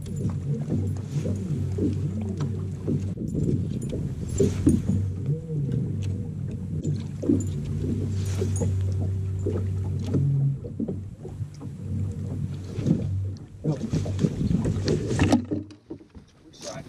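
Bass boat's bow-mounted electric trolling motor humming steadily, with a few brief swishes over it; the hum stops about three-quarters of the way in.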